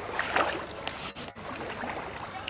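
Water splashing and sloshing as a hippopotamus pushes a floating ball with its snout, loudest about half a second in.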